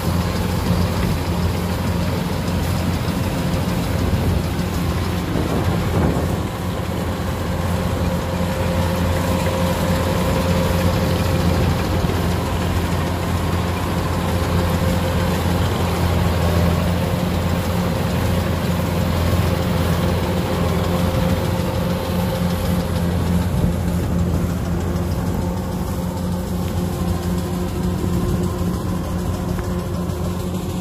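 Kubota DC-105X tracked combine harvester running steadily as it cuts rice: a constant diesel engine hum with the noise of its cutting and threshing machinery.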